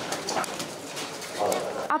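Indistinct voices talking in the background.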